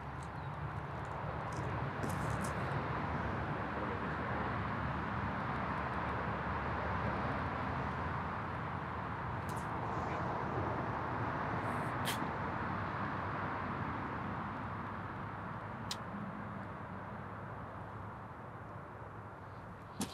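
Steady rushing outdoor background noise that swells gently and fades slowly near the end, with a few faint short clicks.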